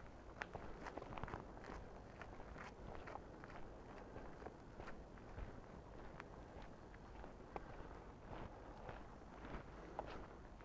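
Faint footsteps of a person walking on a towpath at a steady pace of about two steps a second.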